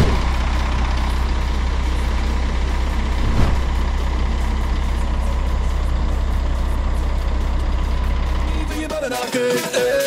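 Scania R 380 truck's diesel engine idling with a steady low rumble. About a second before the end it gives way to electronic music.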